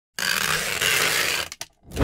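Intro sound effect for an animated logo: a burst of noise about a second and a half long, then a short click and a low thud near the end.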